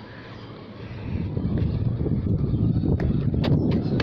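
Low rumbling wind and handling noise on a phone microphone as the camera is moved about, swelling about a second in, with a few sharp knocks near the end.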